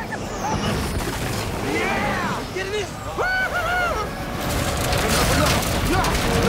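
Low storm wind under short shouted exclamations, with the wind swelling into a broad, louder rush about four and a half seconds in as a tornado reaches the street, in a film soundtrack.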